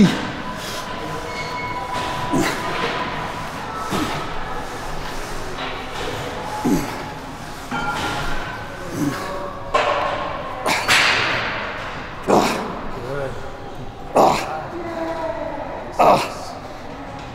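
A man's strained grunts and forceful exhales, one every second and a half to two seconds, with each rep of a heavy seated dumbbell overhead press; one long breathy blow comes about two-thirds of the way through.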